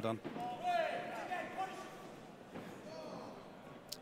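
A man's raised voice shouting from cageside, starting about half a second in and lasting about a second, over the murmur of the crowd in the hall. The crowd murmur carries on more faintly after the shout.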